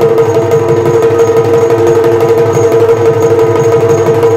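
Yakshagana dance accompaniment: a steady, unbroken drone with fast hand strokes on a maddale barrel drum running under it.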